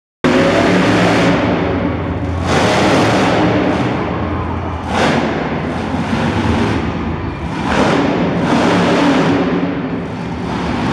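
Monster truck engine revving hard in repeated surges of throttle, about five in ten seconds, under a steady low engine note.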